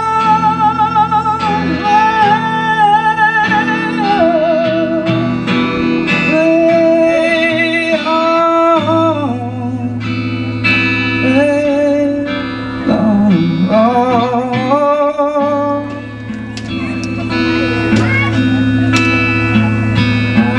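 A male singer accompanying himself on acoustic guitar, singing long held notes with vibrato over the guitar's chords and bass notes.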